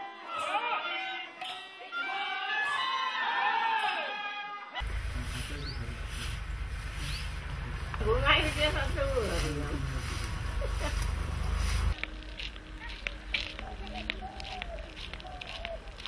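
Kirtan singing with sharp strikes about once a second. About five seconds in it cuts abruptly to a loud, deep rumble with a voice over it. That stops about four seconds before the end, leaving a quieter stretch with short repeated calls.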